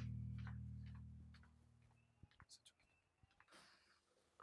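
Low sustained chord of the drama's background score fading out over the first second and a half, then near silence with a few faint ticks.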